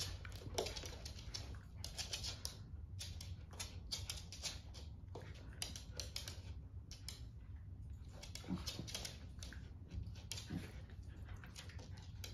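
Two small dogs, a Westie and a Maltipoo, wrestling on a hard floor: their claws click and scrabble on the boards in quick, irregular runs, with a couple of brief low growls in the second half.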